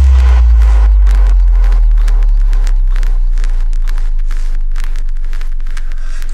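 Breakdown in a minimal techno mix: one long, deep sub-bass note that slowly fades, with faint crackling clicks above it and no beat.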